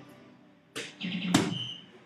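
Soft-tip darts hitting a DARTSLIVE electronic dartboard twice, about half a second apart. Each hit is followed by the machine's short electronic scoring sounds.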